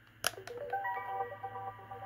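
A click of the toy's switch or button, then a Fisher-Price BeatBowWow robot-dog toy plays a short electronic jingle through its small speaker as it starts up: a bright tune of stepped, chime-like notes beginning about half a second in.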